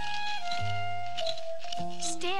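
Background cartoon score music: a simple melody of held notes over low bass notes that repeat about once a second.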